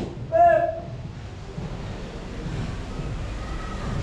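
A short shouted word about half a second in, then low steady background noise with no pad strikes, in a pause between punching combinations on focus mitts.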